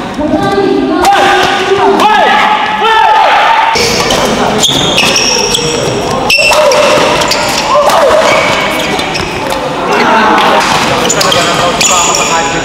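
Badminton doubles rally in an indoor hall: a series of sharp racket strikes on the shuttlecock and short high squeaks of court shoes on the floor, with players and spectators shouting over it.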